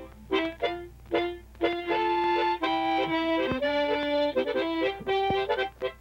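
Harmonica playing a tune in chords: a few short chords, then longer held chords from about two seconds in.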